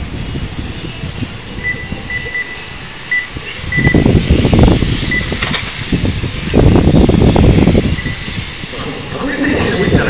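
1/12-scale electric RC racing cars running on a circuit, their motors giving a faint high whine that rises and falls. Voices come through, and there are two louder low-pitched stretches about four and seven seconds in.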